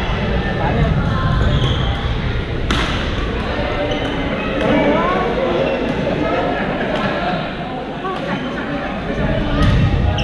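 Busy badminton hall: sharp clicks of rackets striking shuttlecocks on several courts, a strong one nearly three seconds in, over a steady din of many voices echoing in the large gym.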